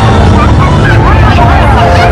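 A passing parade: loud music over a deep steady rumble, with crowd voices calling and chattering over it from about half a second in.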